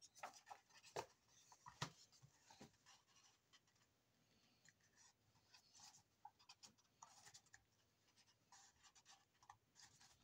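Faint paper handling: sheets of paper rustling and being folded in half, with scattered small ticks and rustles, a few slightly louder ones in the first two seconds.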